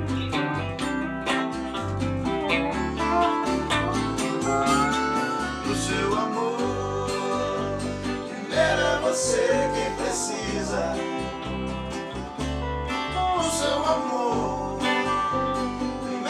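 A small band playing together: acoustic guitar, electric guitar and lap steel guitar, with gliding slide notes.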